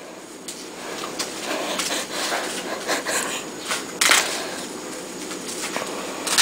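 Rustling and scuffing as a dog wearing new dog boots is handled and shifts about, with several soft knocks, the loudest about four seconds in.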